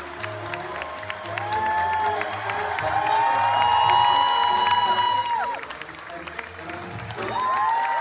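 Theatre pit orchestra playing the curtain-call music in long held notes, over steady audience applause and clapping.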